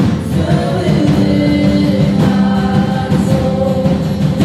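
Live worship band playing a slow song: voices singing long held notes over guitars.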